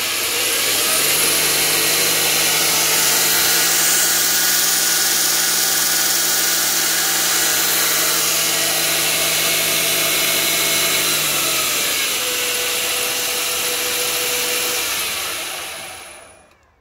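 A 2 hp three-phase motor, fed by a variable frequency drive, runs a 2x48 belt grinder at speed with a steady whir and hum. Near the end it winds down and fades away as the drive frequency is turned down to a few hertz.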